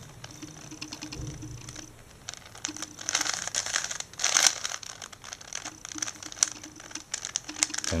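A Rubik's 4x4x4 plastic cube having its layers turned slowly by hand while working through the edge-parity algorithm. After a quiet start, a run of small clicks and rattles begins about two seconds in and comes thickest around the middle.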